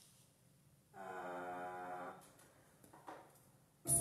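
An electronic keyboard note held steadily for about a second, a faint click, then a music backing track starting loudly just before the end.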